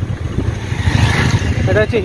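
Low, fluttering rumble of riding in a moving vehicle on a road, with wind buffeting the microphone and a hiss that swells about a second in. A man starts talking near the end.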